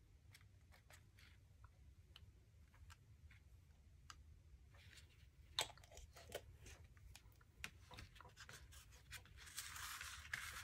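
Faint, scattered small clicks and taps as a dropper bottle of black acrylic ink is handled and used to splatter ink onto a paper card. One sharper tap comes a little past halfway, and a short paper rustle comes near the end.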